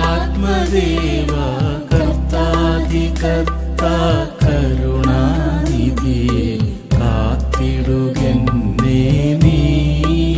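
A Malayalam Christian devotional hymn: a voice sings a wavering, ornamented melody over a sustained low accompaniment, with brief breaks between phrases.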